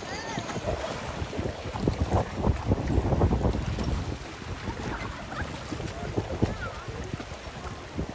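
Wind buffeting the microphone over lake water splashing and lapping, busiest a couple of seconds in as children thrash on a floating foam mat. Faint children's shouts now and then.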